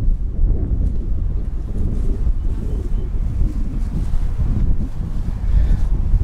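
Wind buffeting the microphone: a loud, gusty low rumble.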